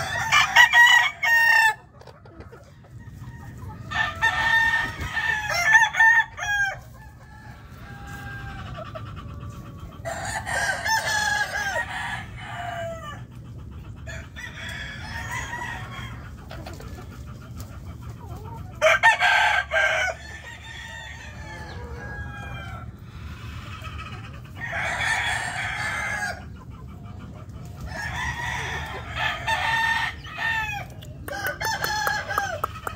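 Gamefowl roosters crowing in turn: about six loud crows a second or two long, with fainter crows from farther birds between them.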